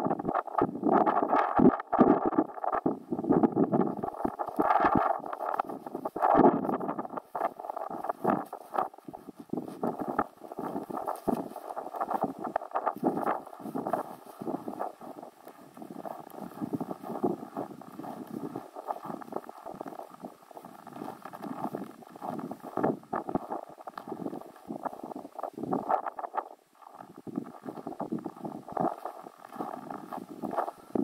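Footsteps on packed snow at a walking pace, about two or three a second, with clothing and camera-handling rustle close to the microphone.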